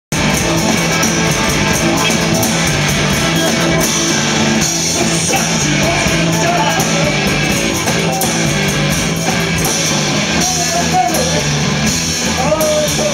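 Live rock band playing loud: electric guitar, bass guitar and a drum kit with cymbals. A voice sings over it in the second half.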